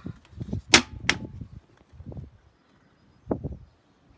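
Plastic toilet seat and lid being handled and lifted open: two sharp clacks about a second in, the first the loudest, among softer knocks, with a last pair of knocks near the end.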